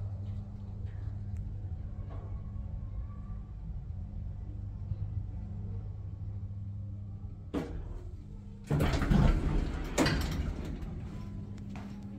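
Old Hitachi Build Ace D elevator with DC Ward Leonard drive, travelling with a steady low hum. It stops with a sharp click about seven and a half seconds in, and its doors then slide open with a loud rumble that fades near the end.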